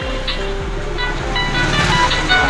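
A Walton RL1910 keypad phone's rear loudspeaker playing an electronic ringtone melody.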